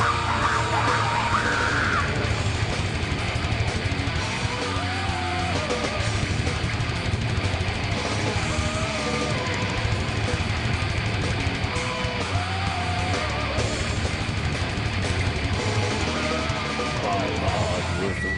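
Extreme metal band playing live: a dense, loud wall of distorted guitars, bass and drums, heard as a concert recording.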